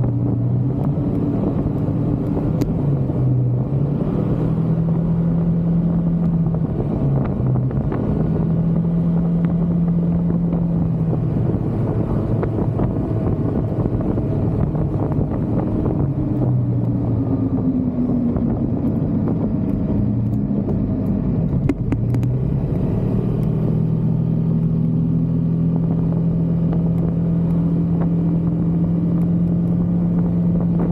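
Yamaha XMAX scooter's engine running at road speed: a steady drone whose pitch sags around eighteen seconds in and climbs back a few seconds later, as the throttle eases and opens again.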